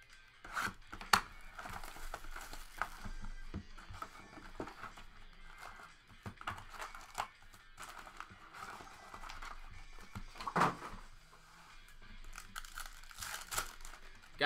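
Plastic shrink wrap being slit and torn off a cardboard trading-card hobby box. The box flap is then opened and foil card packs are handled, giving crinkling, tearing and sharp clicks, with music playing underneath.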